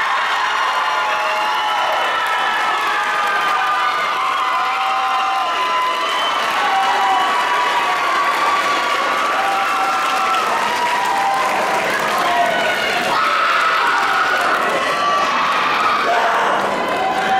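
Audience cheering and applauding, with many voices shouting over the clapping.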